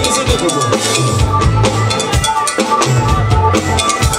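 Live band playing an instrumental groove with no vocals: drum kit and congas on a steady beat under bass, electric guitar and keyboard.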